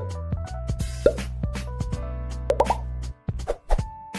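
Sound effects of a subscribe-button animation: short clicks and cartoon pops over a steady electronic bass note, which cuts off suddenly about three seconds in.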